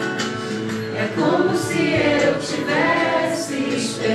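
A song: sung vocals over music, with long held notes.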